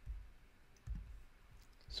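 A few faint computer mouse clicks and soft low bumps over quiet room tone, as a spreadsheet is scrolled.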